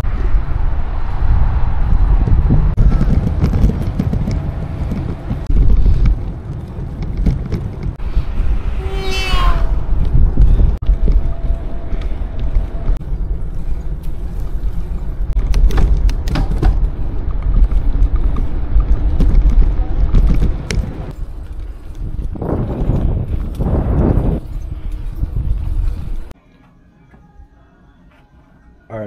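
Wind buffeting the microphone of a camera riding along on a moving bicycle, a loud low rumble with scattered clicks. A short descending whistle-like sound comes about nine seconds in, and the rumble cuts off suddenly shortly before the end.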